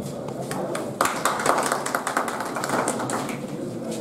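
Murmur of a crowd of voices, then a burst of hand clapping from a group of people starting about a second in and fading after about two seconds, at a lamp lighting.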